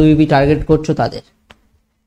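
A man speaking for about a second, then a brief click and silence.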